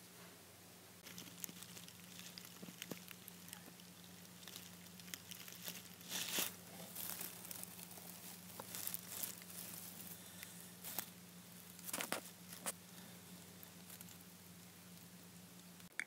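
Faint rustling, crinkling and small clicks of shredded-paper and wood-shaving bedding as a hand and a hamster move about its hideout while the hamster is offered a treat, with louder crackles about six and twelve seconds in. A low steady hum runs underneath.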